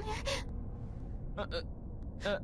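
Brief gasp-like vocal sounds from a dubbed character: one at the very start and another short one about a second and a half in, over a low steady rumble.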